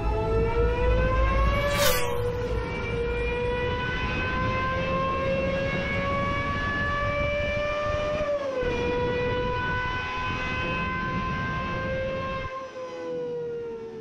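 Gordon Murray T.50s Niki Lauda's naturally aspirated Cosworth V12 running at very high revs, a high-pitched scream whose pitch climbs slowly and drops quickly twice, about two seconds in and about eight and a half seconds in. It eases off near the end.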